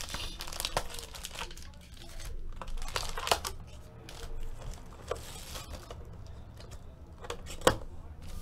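Foil trading-card pack wrappers crinkling and tearing in the hands in irregular rustling bursts, with one sharp knock near the end.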